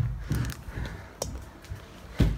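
Handling noise from a handheld phone camera being carried while walking: low thumps and rustling, with one sharp click about a second in.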